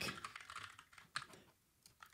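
Faint keystrokes on a computer keyboard: a few scattered key clicks, the last a little past a second in.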